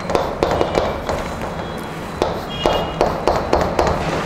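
Chalk on a blackboard writing a formula: a run of irregular sharp taps with short scratchy strokes between them.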